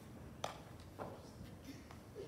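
Two short knocks about half a second apart over quiet room tone, the first sharper and louder.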